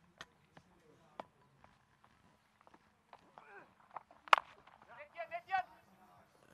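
Cricket bat striking the ball: one sharp crack about four seconds in, the loudest sound, after a few faint taps.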